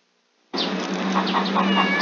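Cat meowing against a steady hiss-like background, starting about half a second in after a brief silence.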